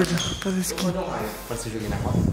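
Men's voices: short exclamations and vocal sounds without clear words.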